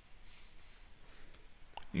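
Faint clicking keystrokes on a computer keyboard as text is typed.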